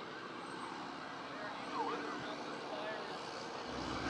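Low, steady street traffic noise with a faint siren gliding up and down in the distance.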